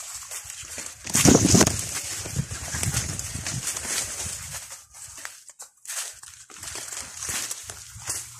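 Footsteps and rustling of dry leaves and plant litter underfoot while walking between plantain plants, with a louder burst of noise about a second in.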